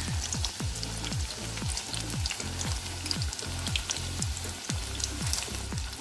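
Salmon head pieces deep-frying in hot oil in a pot, a steady fine crackle of frying. Under it run a steady low hum and a low falling tone repeated two or three times a second.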